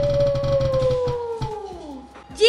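Spin-the-wheel name picker ticking rapidly, the ticks spacing out as the wheel slows, under a long high 'uuuh' voice that slides steadily down in pitch and drops away near the end.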